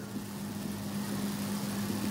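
A steady low hum holding one pitch, over a faint even hiss.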